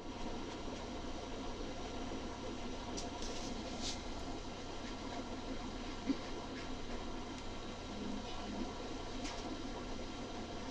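Low steady background hiss and hum, with faint scratchy strokes of an alcohol marker's nib on paper about three to four seconds in.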